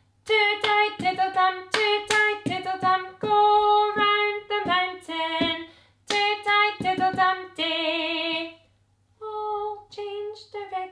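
A woman singing a children's cup song unaccompanied, with sharp taps from plastic cups and her hands keeping the beat of the actions. After a short pause near the end the singing resumes much softer for the quiet verse.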